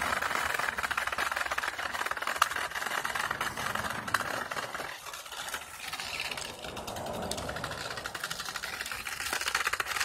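RC car's motor and gears running with a fast, even buzz while it drives and pushes into snow, easing off for a moment about five seconds in and then picking up again.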